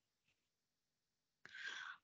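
Near silence, then about one and a half seconds in a faint, short hiss of breath: a speaker inhaling just before talking.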